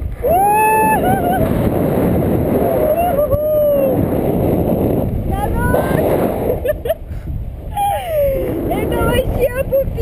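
Strong wind buffeting an action-camera microphone on a tandem paraglider as it banks through turns, a loud constant rumble. Over it a woman's voice squeals and exclaims several times, in high gliding cries.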